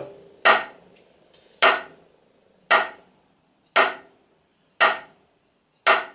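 Wooden drumsticks striking a rubber practice pad: six single full strokes, evenly spaced about one a second. Each is played from the wrists with the stick rebounding back up to the top position.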